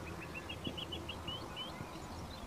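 A bird singing a quick run of about ten short, high chirps, a few of them sliding upward, over a faint steady low hum.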